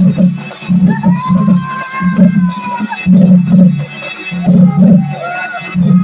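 Live Sambalpuri folk music: barrel drums (dhol) beating a fast, driving rhythm, with evenly spaced high metallic strokes about five a second. A held melody line rises over the drums from about one to three seconds in.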